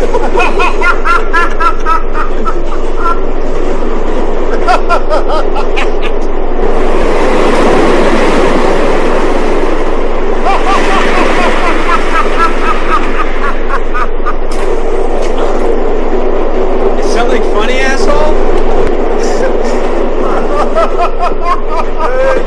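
Steady rumble of a moving subway train heard from inside the car, with men's voices talking and laughing over it.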